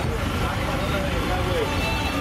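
Steady street ambience: a constant low rumble of road traffic with faint background voices.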